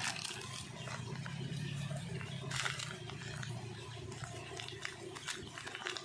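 Plastic packaging rustling and crinkling as a shipping mailer and a zip bag of 8 mm steel ball bearings are handled, with a few sharp crackles, over a steady low hum.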